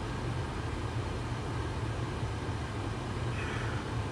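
Steady low rumble and hiss of a car heard from inside the cabin.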